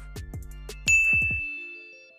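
A single bright chime ding about a second in, ringing on and slowly dying away, over the end of background music that stops shortly after.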